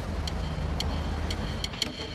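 A steady low rumble with a few faint, irregular ticks.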